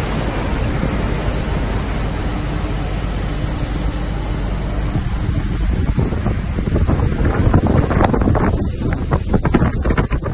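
Wind buffeting the microphone over a steady rush of sea, with a low rumble underneath; the buffeting turns choppier and gustier about seven seconds in.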